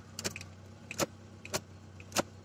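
Zastava Yugo's engine idling as a faint steady hum heard from inside the cabin, with about half a dozen light, sharp clicks scattered through it.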